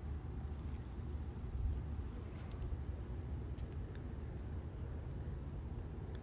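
Small craft scissors snipping through a thin paper napkin, a few faint scattered snips over a steady low room hum.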